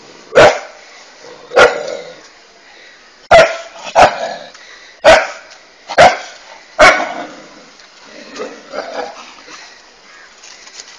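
A dog barking: seven loud, sharp barks spaced about a second apart, then a few quieter ones near the end.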